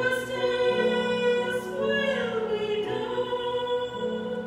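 A group of voices singing a hymn with instrumental accompaniment, each note held for a second or more over steady low notes.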